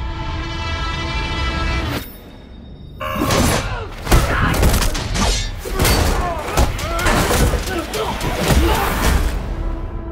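Film trailer soundtrack: a held musical tone that breaks off after about two seconds, then, a second later, a loud action sequence of rapid hits, crashes and booms over driving music.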